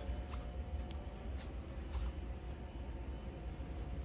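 Steady low room hum of an indoor space, with faint steady tones and a few soft clicks.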